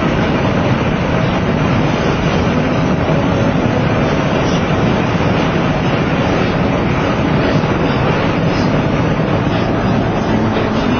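Steady road and wind noise of a car cruising at highway speed, heard from inside the cabin.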